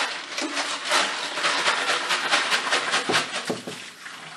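Wet 5.56 brass cases rattling as they are tipped out of a Frankford Arsenal tumbler drum into a sifter: a rapid series of sharp metallic clicks over rushing, splashing water.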